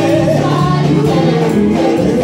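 A women's gospel vocal group singing together into microphones, amplified through PA speakers, over steady keyboard accompaniment.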